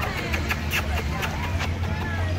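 A steady low rumble, like traffic or wind, with a string of about seven sharp clicks in the first second and a half, and faint voices in the background.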